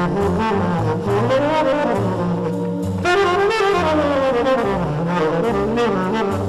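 Live jazz band playing: a sustained melody line that bends and glides in pitch, over a bass that moves in steps.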